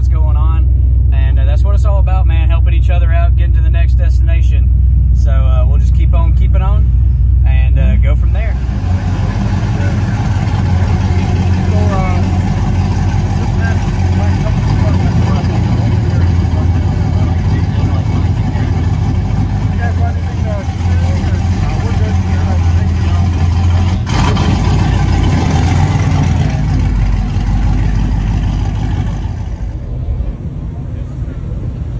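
Steady low engine and road drone inside a turbocharged squarebody pickup's cab, with a man's voice over it. About eight seconds in it gives way to the open-air noise of a car-show lot: a lower vehicle rumble, wind and people chatting.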